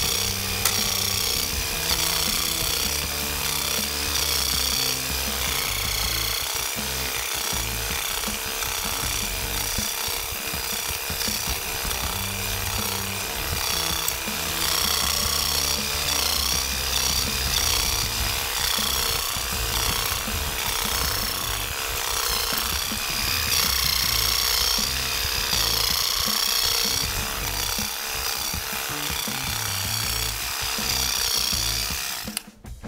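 MUSASHI WE-700 electric weeding vibrator running, its vibrating blade scraping and raking weeds and soil with a steady hum. Background music with a repeating bass line plays over it.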